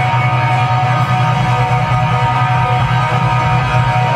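A live rock band playing: electric guitar and bass guitar over a sustained low note, with no vocals.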